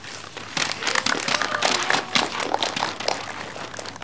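A small group clapping their hands, a dense patter of claps that starts about half a second in and thins out near the end.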